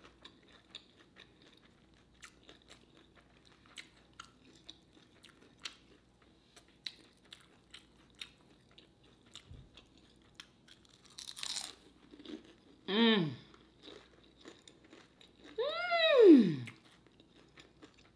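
Close-miked chewing of a crispy fried lumpia (Filipino egg roll): a string of small, faint crunches and mouth clicks. Near the end come two drawn-out "mmm" hums of enjoyment, their pitch rising and falling, the second longer.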